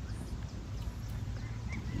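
Beach ambience: a low, uneven rumble with a faint hiss above it.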